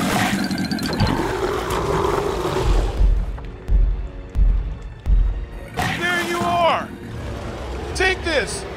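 Cartoon soundtrack of background music with wordless creature vocal effects, and a run of four deep thuds about 0.6 s apart in the middle. About six seconds in, a pitched cry slides down in pitch.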